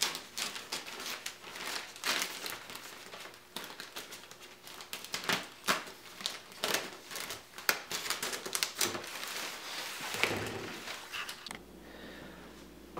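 Thin clear plastic drop-cloth sheeting crinkling and rustling in irregular bursts as it is handled and wrapped around a PVC frame.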